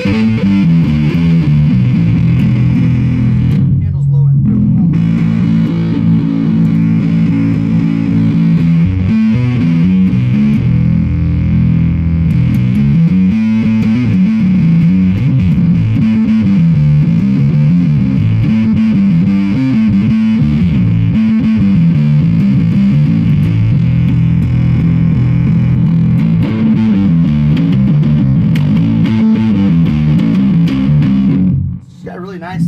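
Electric bass played through a handmade clone of the Black Arts Black Sheep fuzz pedal (a take on the Roland Bee Baa), switched on: a continuous riff of sustained, muffled, fuzzy low notes.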